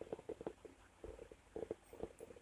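Faint, irregular soft ticks and rubbing of fingers and a thin steel crochet hook handling a small cotton-thread crochet piece close to the microphone, as it is pressed into shape.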